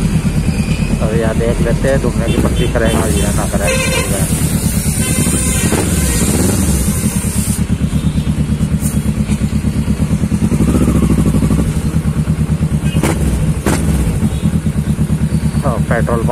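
Kawasaki Ninja 650R's parallel-twin engine running at low revs and idling, a steady, evenly pulsing beat throughout, with a voice talking over it now and then.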